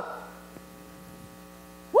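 Steady electrical mains hum from the church sound system, heard plainly in a pause in the preaching; a voice breaks in right at the end.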